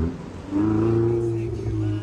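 Ferrari 488's twin-turbo V8 engine running under throttle as the car pulls away, a steady low engine note that dips slightly in pitch before cutting off abruptly at the end.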